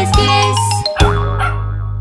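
Children's song music with a bouncy beat that ends about a second in on a final struck chord, its low notes held while the bright upper ring fades away.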